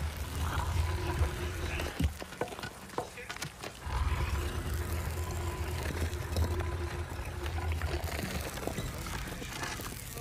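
A heavy round stone being rolled aside from a rock-cut tomb entrance: a low grinding rumble in two long stretches, with scattered scraping knocks.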